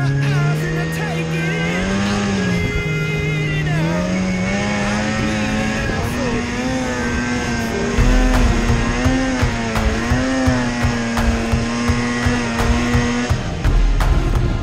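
Polaris snowmobile engine running hard under throttle, its note climbing over the first few seconds and then holding high with small wavers as the throttle is worked. Low thumping joins from about eight seconds in.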